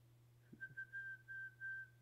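A man whistling softly: a run of about five short notes at nearly the same high pitch, starting about half a second in.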